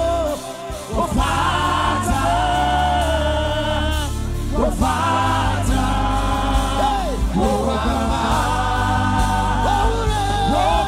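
Live gospel worship music: several voices singing together in long held notes with vibrato, over instrumental backing with steady low bass notes. The music thins out briefly just after the start, then carries on.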